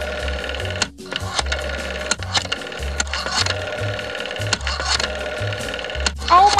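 Rotary telephone dial clicking out a number: repeated rapid clicks as the dial spins back after each digit, with a brief pause between digits about a second in.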